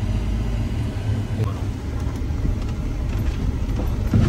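Steady low rumble of a Jeep Wrangler's engine and tyres, heard from inside the cabin as it climbs a steep, rough gravel track in four-wheel drive.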